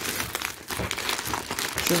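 Thin plastic bag crinkling irregularly as it is handled and moved about.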